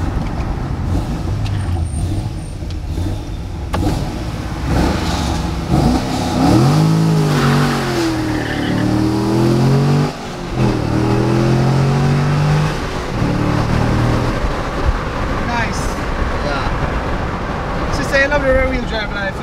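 Chevrolet Corvette's 6.2-litre V8 heard from inside the cabin during a full-throttle pull: a steady rumble at first, then about six seconds in the revs climb hard, break off sharply near ten seconds at an upshift, climb again, and ease off a few seconds later.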